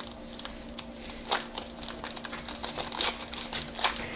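Foil wrapper of a Panini trading-card pack crinkling as it is torn open by hand, in short irregular crackles. A faint steady hum sits underneath.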